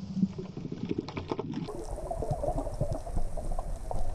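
Underwater sound picked up by a camera in the sea: a dense patter of small clicks and crackles. After a cut about two seconds in, a low watery rumble with some bubbling follows.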